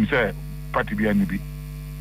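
Steady electrical mains hum on a telephone line, under two short stretches of speech.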